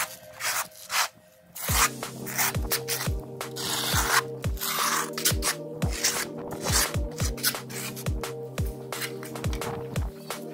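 Electronic background music with a steady beat, which comes in after a short quiet moment about a second in. Under it is the rasping scrape of a steel notched trowel combing cement-based tile adhesive across a concrete slab.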